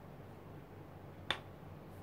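A single sharp click about a second in: a clear acrylic stamp block set down on a wooden desk.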